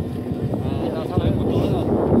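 Wind buffeting the microphone with a steady low rumble, with faint voices in the background.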